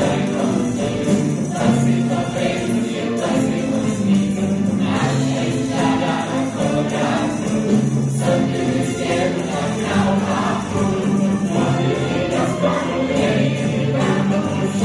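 A stage musical number: a large cast singing together as a choir over instrumental accompaniment with a steady rhythm.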